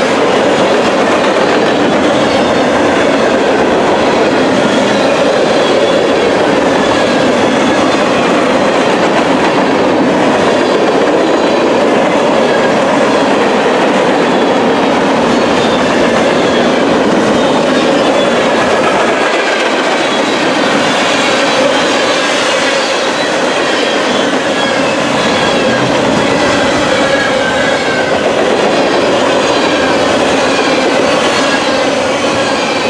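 Freight cars of a long mixed train rolling past at close range: steady, loud wheel-on-rail noise.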